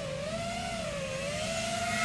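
An FPV quadcopter's brushless motors and propellers whining in flight, one steady tone whose pitch sags a little and then climbs back as the throttle changes.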